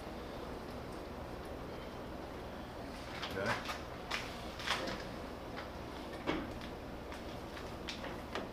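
A few light metal clunks and knocks at a large engine lathe while a heavy steel shaft held in the chuck is lined up with the tailstock center, most of them between about three and six and a half seconds in, over a steady low hum.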